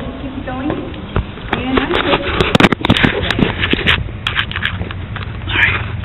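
Scattered sharp knocks, taps and scrapes of someone climbing steel rung loops set in a concrete wall, thickest in the middle of the stretch, over a steady low rumble.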